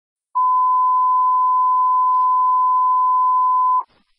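Fire dispatch radio alert tone: one steady beep held for about three and a half seconds, then cut off sharply. It signals that a box alarm dispatch follows.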